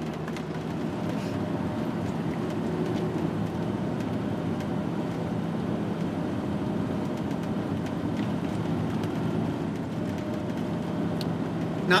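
Inside the cab of a 2001 Chevy-chassis Fleetwood Tioga Arrow Class C motorhome under way: steady engine drone and road noise, with a low, even hum.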